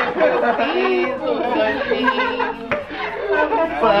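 Several men's voices talking over an acoustic guitar being strummed, with a single sharp click partway through.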